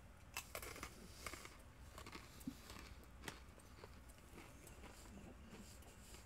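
Faint crunching of a person chewing Dot's honey mustard pretzels close to the microphone: a scatter of small crunches that thin out after about three seconds.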